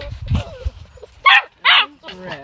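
Yellow Labrador retriever puppies in a wire pen yapping: two short, high-pitched yaps about half a second apart in the second half, after a low rumble in the first half second.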